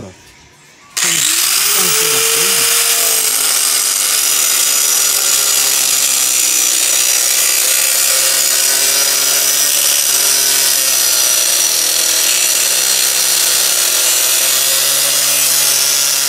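Angle grinder switched on about a second in, spinning up and then cutting steadily through the metal of a motorcycle's broken rear frame with a loud, harsh grinding.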